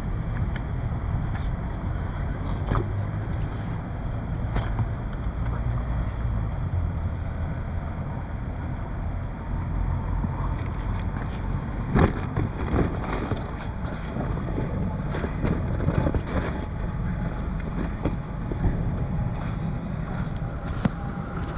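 Wind buffeting the microphone over a steady low rumble outdoors, with scattered knocks and scuffs of sneakers being handled and set down on wet paving stones. The sharpest knock comes about twelve seconds in, and a few more follow a few seconds later.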